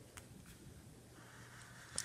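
Near silence, with a faint click just after the start. Near the end comes a faint soft scratch of a Copic marker's tip drawing a stroke across paper.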